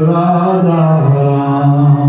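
A man singing a slow devotional chant into a microphone, holding long notes at a steady low pitch that steps down slightly about a second in.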